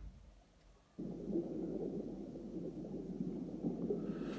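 A brief thump, then a steady low rumble that starts suddenly about a second in and carries on without a break.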